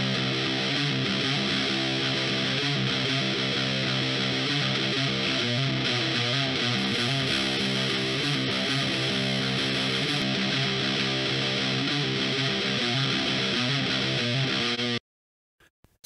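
Playback of a heavily distorted electric guitar, very crunchy, played through a distortion pedal and amp and recorded with a large-diaphragm condenser microphone in front of the amp. Thick chords ring at an even loudness, then cut off suddenly about a second before the end.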